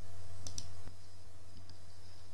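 A few faint short clicks in the first second and one more near the end of the second, over a steady low hum.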